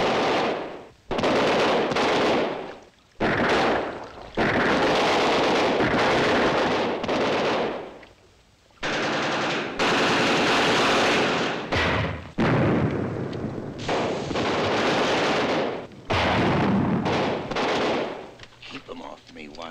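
Film soundtrack of belt-fed machine-gun fire: about seven long bursts, one to four seconds each, separated by short pauses.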